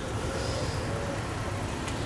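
Steady low rumble of street traffic, a car engine running nearby.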